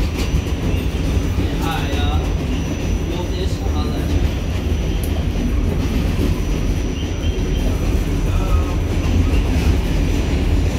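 R46 subway car running along the track, heard from inside the car: a steady, loud low rumble.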